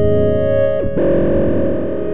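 DIN Is Noise software synthesizer played live as a microtonal keyboard instrument, holding a sustained chord. A little under a second in there is a brief downward pitch glide, and then the chord turns brighter and buzzier, as if distorted.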